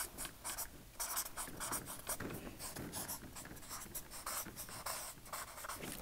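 Marker pen writing on flip-chart paper: a quick run of short, irregular strokes as letters and numbers are written.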